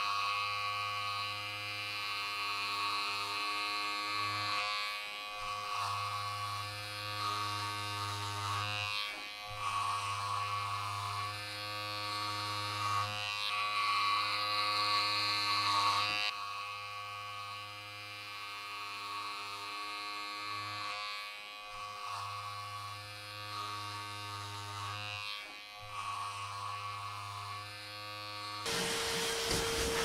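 Hand-held electric rug carving clipper buzzing steadily as it trims and sculpts the tufted yarn pile, with brief dips every few seconds as it is moved over the rug. Near the end the buzz gives way to the steady hiss of a vacuum cleaner starting up.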